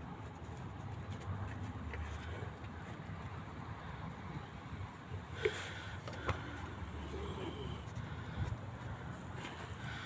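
PVC downpipe being pushed into a freshly glued socket fitting, giving two short sharp knocks about a second apart half way through, over a steady low rumble.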